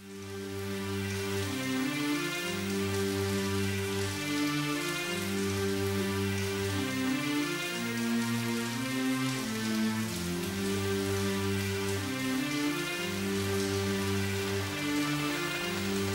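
Rain falling, a steady patter, laid over slow sustained chords and held bass notes that change every second or two, rising out of silence right at the start: the instrumental intro of a rap track.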